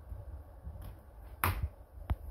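A sharp click a little past halfway, with fainter clicks shortly before and after it, over a low rumble.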